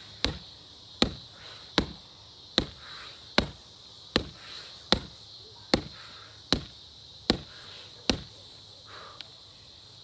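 Repeated strikes landing on a free-standing punching bag: dull thuds at a steady pace, about one every 0.8 seconds, stopping about 8 seconds in.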